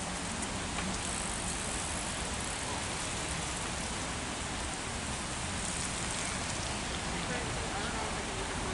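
Steady rain, an even hiss with a few faint ticks of drops.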